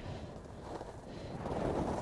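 Wind buffeting the microphone of a camera carried by a moving skier, a rough, even rumble and hiss that grows louder in the second half.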